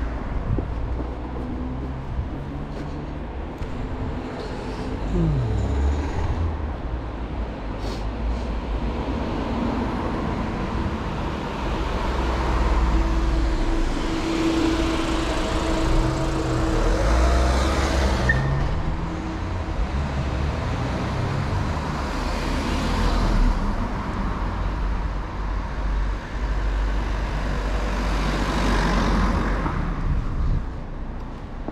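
City street traffic: motor vehicles passing, the noise swelling and fading several times over a steady low rumble, with one engine note dropping in pitch about five seconds in.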